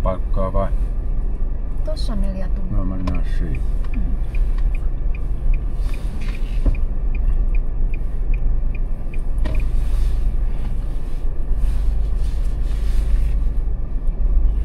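Car's turn-signal indicator ticking evenly, about two and a half ticks a second, from a few seconds in until about nine seconds, over the low rumble of the car driving slowly.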